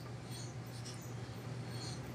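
Faint scratchy rubbing as the flywheel of a Briggs & Stratton 17.5 hp OHV engine is turned slowly by hand with the spark plug out, over a steady low hum.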